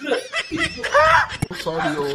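A man's voice in wordless exclamations and chuckling, ending on a drawn-out held vocal sound.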